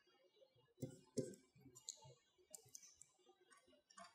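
Near silence: room tone with a few faint, short clicks, two close together about a second in and one near two seconds.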